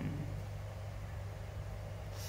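Steady low background hum with a faint even hiss, with no distinct event.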